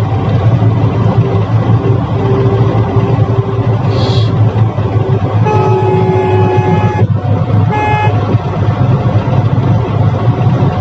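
Engine and road noise of a Mahindra Bolero driving at highway speed, heard inside its cabin. A vehicle horn honks once for about a second and a half around the middle, then gives a short toot about a second later.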